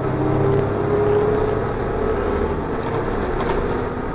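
Cabin noise of a city transit bus under way: the engine and drivetrain give a steady low hum, with a whine that climbs a little in pitch over the first second and then holds, over continuous road noise.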